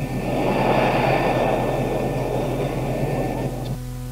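Live audience laughing and applauding, heard as a steady crowd noise on an old cassette recording. It cuts out suddenly near the end, leaving only the tape's low hum.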